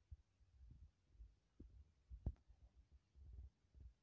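Near silence with faint, irregular low thumps and rumble from handling of the hand-held camera, and one sharper click a little after two seconds in.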